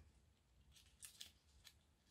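Near silence, with a few faint crinkles and ticks of a paper yarn ball band being handled between the fingers, about a second in.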